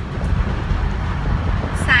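Wind buffeting the microphone and road noise in an open-top convertible moving at highway speed: a loud, irregular low rumble. A woman starts speaking near the end.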